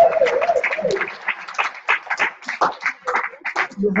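A small audience clapping, with a voice cheering at the very start; the claps grow thinner and more scattered after about a second.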